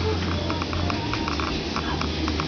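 A house cat meowing faintly, with wavering pitched calls over a steady low hum and scattered small clicks.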